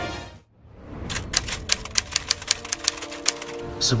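A typewriter sound effect of the kind used in news programmes: a rapid run of key clacks, about six a second, over a soft sustained music pad. The clacks start about a second in, after the title music has faded out, and stop shortly before the end.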